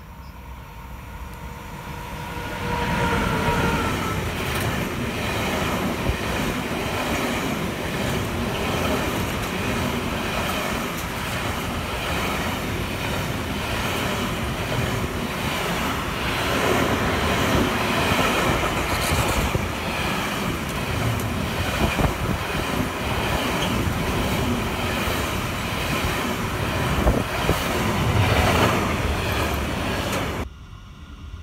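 Freight train of container and swap-body wagons passing close by. The sound builds over the first few seconds as the locomotive nears, then becomes a loud, steady rumble and rattle of wagon wheels on the rails, with scattered clicks of wheels over the track.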